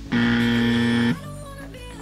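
Background music with a loud, steady buzzer-like tone laid over it for about a second, starting and stopping abruptly just after the start.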